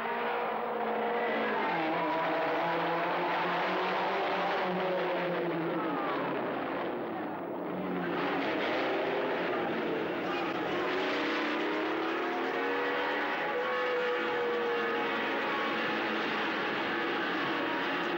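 Vintage racing cars passing at speed one after another in a road race, their engine notes gliding up and falling away as each goes by, with a brief lull about seven seconds in.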